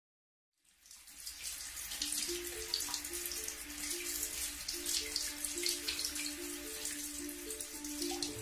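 Running, dripping water with irregular splashy drips, over a slow background melody of soft sustained notes; both fade in about half a second in.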